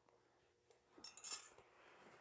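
A brief cluster of light metallic clinks about a second in: thin TIG filler rods being set down on a steel welding bench.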